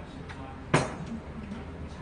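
Eating sounds at a table over bowls of jjamppong noodle soup: one short, sharp noise about three quarters of a second in, with quieter background between.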